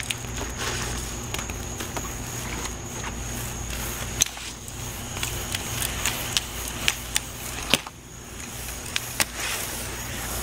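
Burning sparklers fizzing with a steady hiss and scattered, irregular sharp crackles and pops.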